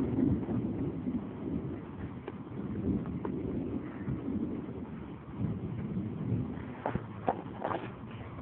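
Distant thunder rumbling low, swelling and fading in slow waves, with a few knocks from the phone being handled near the end.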